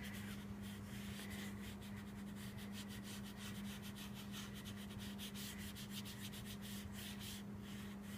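Foam stamping sponge pounced and rubbed with white craft ink over cardstock: a faint, quick series of soft dabs and scuffs, several a second.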